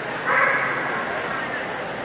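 A dog gives a single short, high bark about a quarter second in, over a steady murmur of voices.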